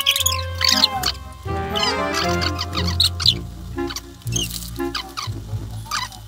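Background music added in editing, with high squeaky chirping glides over it in the first half; from about three seconds in, a lower pulsing beat carries on alone.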